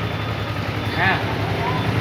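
Motorcycle engine idling steadily, a low even hum, while hooked to a diagnostic tool that reads it as running normally.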